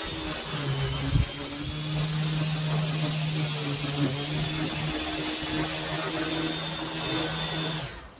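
String trimmer running steadily as its spinning line cuts grass. The motor hum shifts slightly in pitch as the load changes, over a hiss, with one sharp knock about a second in.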